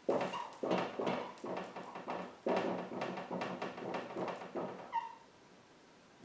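Dry-erase marker writing on a whiteboard: a string of squeaky, scratchy strokes, ending with one short high squeak about five seconds in.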